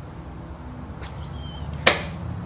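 A golf club swung through in a drill swing: one sharp swish near the end, with a fainter one about a second in.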